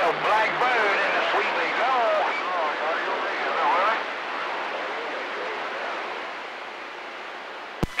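CB radio receiver hissing with static, with faint, garbled voices of other stations wavering underneath through the first half; the hiss slowly gets quieter toward the end.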